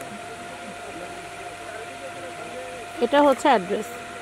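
Steady background murmur of a shop with faint distant voices and a thin steady hum; about three seconds in, a person's voice speaks loudly for under a second.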